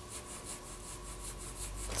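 An H graphite pencil shading on drawing paper: a faint, rapid back-and-forth rubbing of the lead across the paper.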